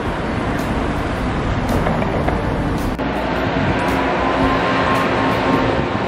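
Road traffic on a city street: a steady wash of car engine and tyre noise as vehicles pass.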